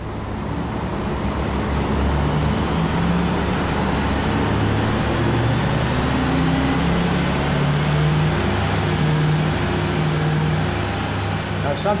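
L5P Duramax 6.6-litre V8 turbo-diesel running on an engine dynamometer as it is brought up in speed and load: it gets louder over the first two seconds, then holds steady. A thin high whine from the stock variable-geometry turbocharger climbs slowly in pitch throughout.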